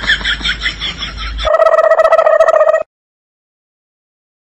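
People laughing with quick high-pitched giggles; about a second and a half in this gives way to a steady electronic buzzing tone with a fast flutter, which stops abruptly just before three seconds, followed by silence.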